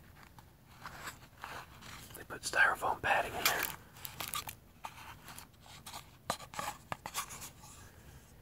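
Small cardboard box and its packing being handled up close: scattered short clicks and handling noises, busiest around three seconds in.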